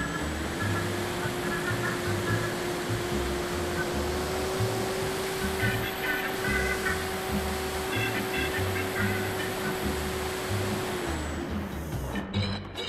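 Background music with a steady beat, over the steady whine of the Radian XL's electric motor and propeller. The whine rises in pitch at the start, holds, and drops away about a second before the end as the power comes off.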